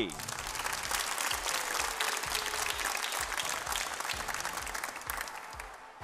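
Studio audience applauding, a dense clapping that fades away near the end.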